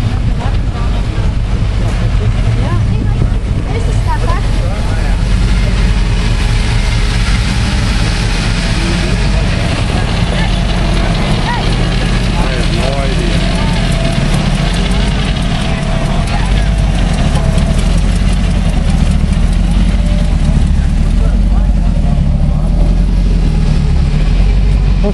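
Engines of classic cars and hot rods rumbling steadily as they drive slowly past at low speed, with the murmur of people talking in the background.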